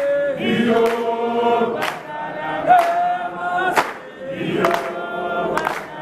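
A choir singing, with voices holding long sustained notes, over a few sharp percussive hits.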